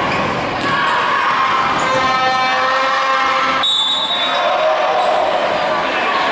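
Basketball game in a large gym: crowd noise and voices with the ball bouncing on the hardwood court. From about two seconds in comes a held pitched tone that cuts off sharply, followed at once by a short, high referee's whistle blast that stops play.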